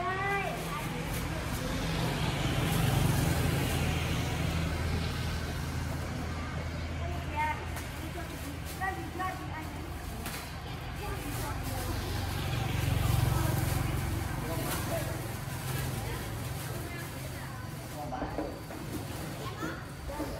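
Street traffic: the engines of passing motor vehicles swell and fade twice, about three seconds in and again about thirteen seconds in. Voices of people talking come and go in between.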